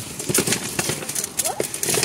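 Plastic pet-treat pouch crinkling and rustling as it is handled, a run of irregular clicks and crackles.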